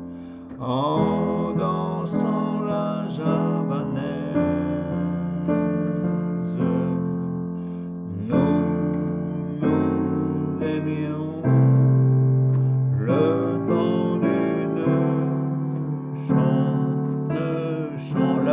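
Yamaha digital piano playing a slow chord accompaniment, held chords changing every second or two, with a deep bass note struck about eleven and a half seconds in.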